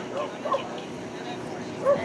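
A dog whining and yipping in short, high, arching calls, three times: near the start, about half a second in, and near the end.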